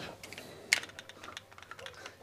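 Camera being handled and set down on a table: light clicks and taps, with one sharper click just under a second in.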